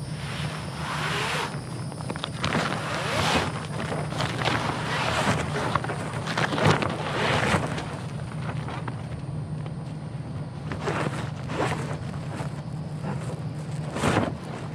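Old RV slide-topper awning fabric being pulled out of its rail, rustling and scraping in a series of irregular pulls, with wind buffeting the microphone.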